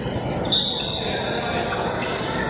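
Game sounds from an indoor court in a large, echoing sports hall: players' feet and a ball on the wooden floor under a background of voices, with one sharp high tone about half a second in that rings away over about a second.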